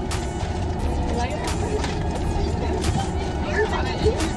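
Aluminium foil crinkling in short, irregular crackles as several tight layers of foil wrapping are peeled open by hand, over a steady low hum in a car cabin.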